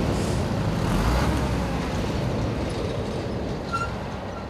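Road traffic: a heavy vehicle's engine rumble and tyre noise that swells about a second in and then slowly fades.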